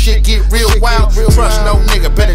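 Hip hop song: rapping over a beat of deep bass kicks that slide down in pitch, under a steady low bass.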